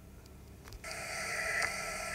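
Faint room tone with a light click, then about a second in a steady hiss starts abruptly and slowly grows louder: the background noise of a recorded voice message beginning to play back on a tablet.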